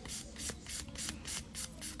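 Hand nail file rasping across the free edge of a hard acrygel nail extension in short, even strokes, about four or five a second, levelling the surface and thinning the tip.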